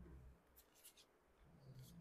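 Very faint swishes of a small paintbrush stroking paint onto paper, a few short strokes.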